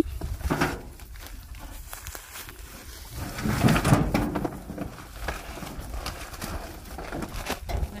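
Handling noise from a plastic-wrapped food basket being pulled out of a wooden truck bed: rustling and knocks, loudest about three to four and a half seconds in, over low wind rumble on the microphone.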